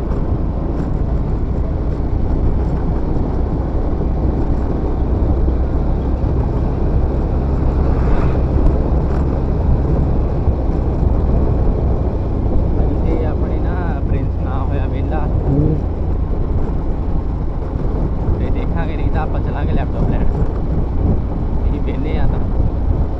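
Single-cylinder Bajaj Pulsar 125 motorcycle running at a steady low cruising speed, under heavy wind buffeting on the microphone.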